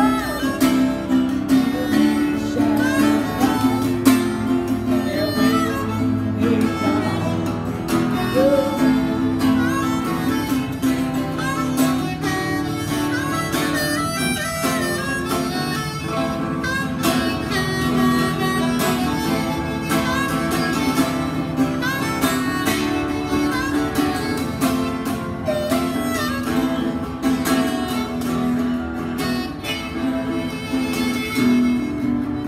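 Harmonica playing the lead line in an instrumental break over a strummed acoustic guitar.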